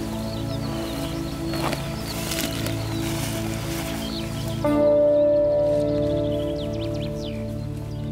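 Background music of held, slowly changing chords, the chord shifting and growing louder about halfway through, with birds chirping over the first half.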